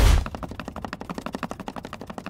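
Wooden paddle ball toy being hit very rapidly, a fast, even rattle of about a dozen sharp taps a second.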